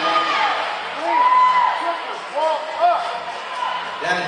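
Spectators' voices echoing in a large hall: overlapping shouts and calls, with one drawn-out call about a second in.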